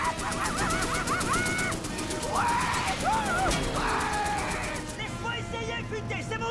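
Men yelling and whooping in excitement over film music. Under the first half runs a rapid, even rattle of about ten clicks a second.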